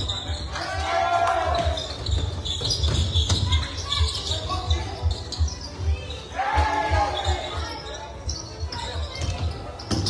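Basketball game in play on a wooden gym court: repeated dull thuds of the ball and feet on the floor, with players' voices calling out twice, about a second in and again near seven seconds, in a large echoing hall.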